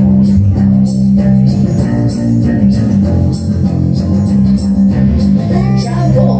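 Live pop-rock song played over a PA: a loud steady bass line, guitar and a regular drum beat, with a woman singing into a handheld microphone.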